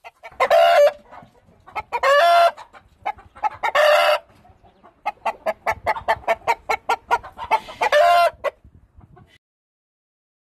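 Indian game rooster giving four short, loud calls, each about half a second long, with a run of quick clucks in the last few seconds.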